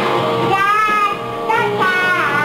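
A small child singing into a microphone over rock music with guitar. There are two sung phrases, the first about half a second in and the second near the end.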